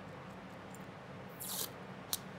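Masking tape coming off the roll with one short rip about one and a half seconds in, over quiet room tone.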